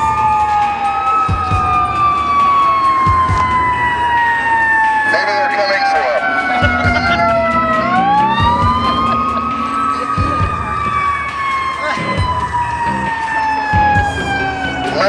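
Fire truck siren wailing as it passes, two siren tones overlapping, each slowly falling in pitch and then sweeping back up. A low steady tone joins for a few seconds in the middle.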